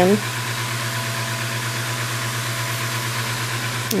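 A steady low hum with an even hiss, an unchanging background drone that carries on under the speech before and after.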